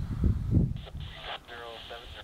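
A low rumble in the first half second or so, then a muffled, tinny voice that sounds band-limited, like speech from a radio.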